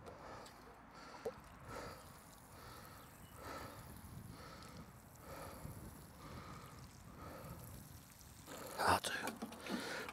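Water pouring from a plastic watering can onto soil, faint, with soft swells about every 0.7 s. A few knocks near the end as the can is handled.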